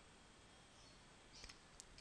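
Near silence: faint room tone, with two faint short clicks near the end.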